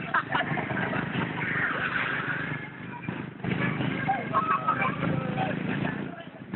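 Motorcycle engines and street traffic running steadily, with people's voices talking over them; the sound drops briefly about three seconds in.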